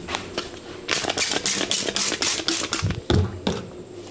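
A cloth towel being handled and shaken by hand: a quick run of rustling, flapping swishes, about six a second. A couple of soft knocks on the counter follow near the end.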